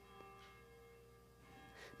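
Near silence with a faint held chord of several steady tones, soft background music sustained under a pause in speech.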